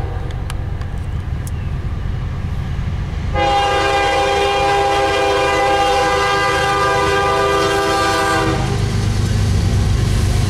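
Norfolk Southern diesel freight locomotive sounding its air horn for a grade crossing: a blast ends just as it begins, then one long blast of about five seconds, a chord of several tones, over the low rumble of the approaching locomotive. The rumble grows louder near the end as the lead unit reaches the crossing.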